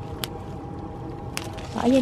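Two small sharp snaps about a second apart as strawberries are picked off the plant by hand, their stems breaking, over a steady faint hum.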